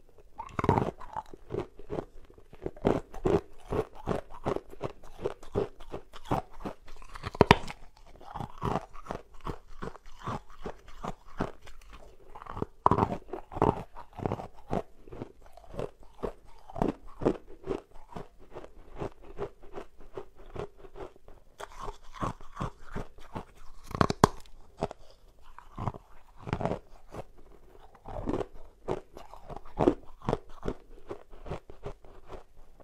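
Frozen ice balls being bitten and chewed: a dense, uneven run of sharp crunches and cracks, with the loudest crunches about seven seconds in and again around twenty-four seconds.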